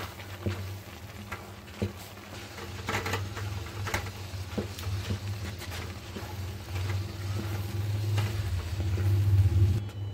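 A spoon stirring rice flour into boiling water in a pan, with scattered clicks and knocks of spoon on pan, over a steady low hum. The hum grows louder in the last couple of seconds.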